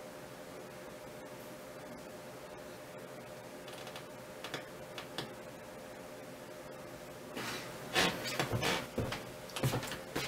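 Light clicks and then a run of sharp knocks from the metal parts of an aluminium-and-brass telescope mount as it is handled and set down in place. The knocks come thick and loud from about seven seconds in, over a faint steady hum.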